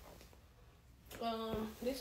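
Quiet room tone, then a woman's voice starts about a second in: a short held vocal sound, a small click, then the start of her talking.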